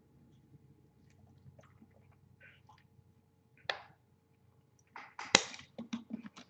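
Faint scattered clicks over a steady low hum, with two short, louder bursts of noise near the middle and towards the end.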